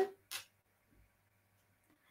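Near silence in a pause of a video-call audio stream, broken by one brief, soft noise about a third of a second in.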